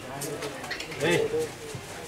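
Speech: a man's voice with other voices in the background.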